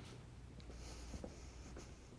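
Faint footsteps, a few soft steps about half a second apart, with light rustling of clothing and gloves, over quiet room hum.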